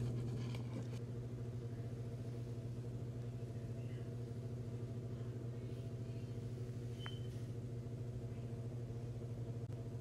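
A steady low hum with several fainter overtones, unchanging throughout, with faint rustling of plastic packaging in the first second.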